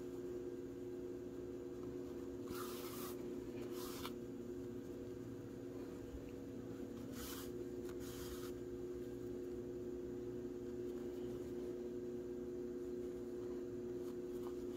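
Yarn being drawn through crocheted fabric with a yarn needle as an ear is sewn on: four short, soft swishes, a pair about three seconds in and another pair about seven to eight seconds in, over a steady low hum.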